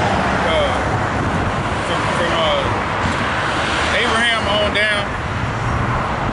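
Steady road traffic noise from cars passing, a continuous low rumble, with snatches of voices over it.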